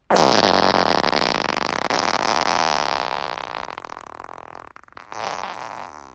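A long human fart with a fast, buzzing flutter starts suddenly and fades gradually over about four and a half seconds. A second, shorter fart follows about five seconds in.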